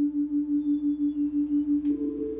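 Synthesizer playing a single steady low note with a fast tremolo, pulsing about five times a second. Near the end a click sounds and the note jumps to a higher pitch.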